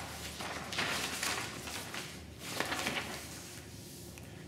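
Sheets of paper rustling and sliding over a piano lid as they are laid out, in a few soft swishes of about half a second each.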